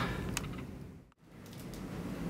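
Faint room tone with a small click or two, cutting to complete silence for an instant about a second in at an edit, then faint steady room noise.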